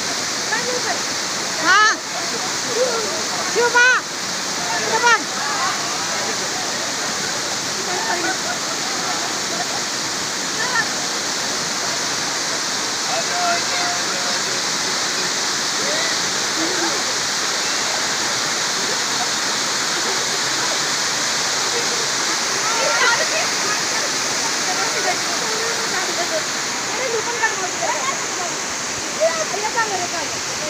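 Waterfall cascading over rock, a steady rushing of falling water.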